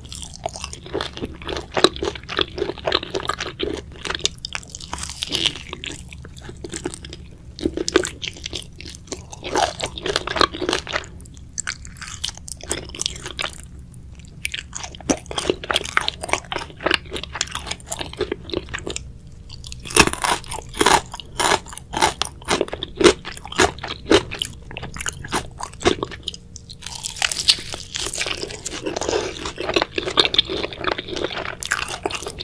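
Close-miked biting and chewing of crispy Korean fried chicken: the battered crust crackles and crunches with each bite, in bouts with short pauses between.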